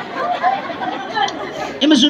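Several people chattering and talking among themselves, no single voice standing out. A louder voice comes in just before the end.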